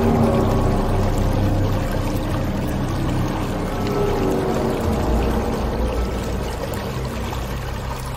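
Shallow stream running fast over stones, with soft background music of long held notes laid over it.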